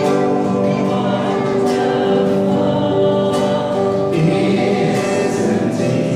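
A choir singing a hymn with instrumental accompaniment, in long held notes.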